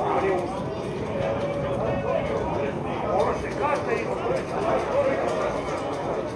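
Voices talking and calling out, several overlapping and not clearly worded.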